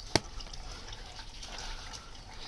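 A bicycle tyre being levered back onto its rim with a plastic tyre lever: one sharp click just after the start, then faint rubbing and handling noise of the tyre on the rim.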